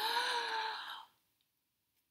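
A woman's breathy, drawn-out 'ooh' like a sigh, lasting about a second, then silence.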